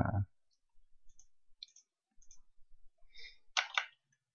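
Computer mouse clicking several times, faint and sparse, with a louder pair of clicks near the end, as the On Click event's code editor is opened.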